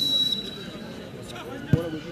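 A referee's whistle blast ends early on, under the faint murmur of spectators' voices. About three-quarters of the way through comes a single thud: a football struck for a penalty kick.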